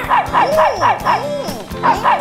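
Cartoon dog yapping in a quick run of short, falling yelps, with another yelp near the end, over background music.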